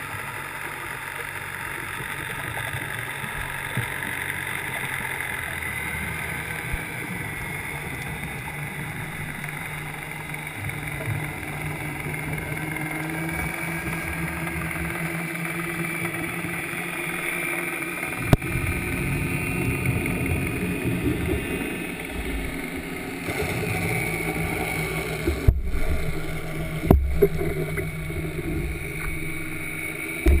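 Muffled underwater sound during a dive ascent: a steady, engine-like drone carried through the water, growing fuller in the lower register after about eighteen seconds, with two sharp knocks near the end.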